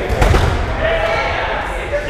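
Rubber dodgeballs thudding and bouncing on a hardwood gym floor, loudest in a quick cluster of hits just after the start, with players' voices in the background.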